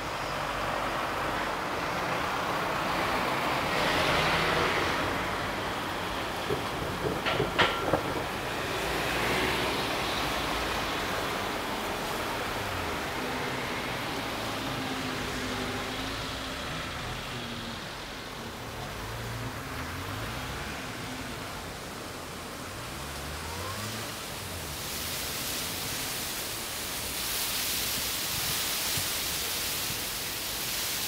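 Vehicle traffic: a steady rush of noise that swells as vehicles pass, with engine tones rising and falling in the middle and a few sharp clicks about seven seconds in.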